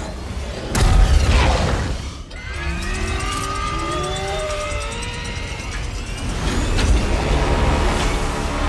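Action-film sound mix of orchestral score and giant-robot fight effects: a heavy crash about a second in, then sliding, wavering tones over a low rumble, and another hit near the end.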